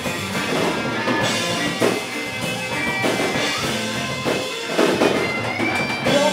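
Live rock band playing an instrumental passage of a song, with electric guitars over a drum kit.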